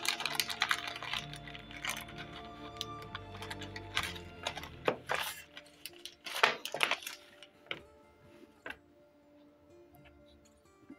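Thin plastic zip-lock bag crinkling and rustling in the hands as it is opened and a small 3D-printed part is taken out, in irregular crackles that die away after about eight seconds. Soft background music with steady held notes plays underneath.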